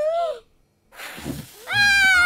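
Cartoon child voices: a short vocal sound trailing off, a brief pause, a breathy blow about a second in, then a long high-pitched squeal near the end as low notes of background music come in.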